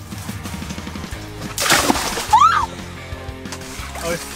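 Water sloshing as a person lowers herself into a small plunge pool, with a loud splash a little after halfway, over background music.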